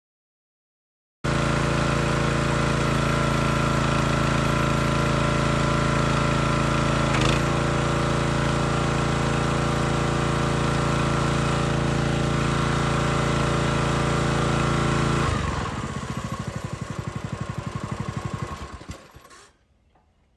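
Small gas engine of a log splitter running steadily, with a brief dip in pitch about seven seconds in. About fifteen seconds in it drops to a slower pulsing beat and dies away shortly before the end.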